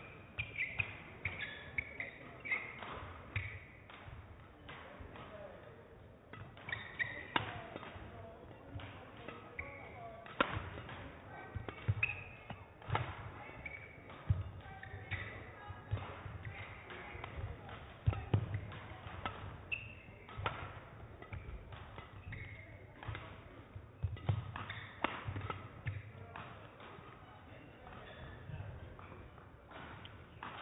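Badminton singles rally: sharp racket hits on the shuttlecock every second or two, with shoes squeaking and thudding on the court mat as the players move.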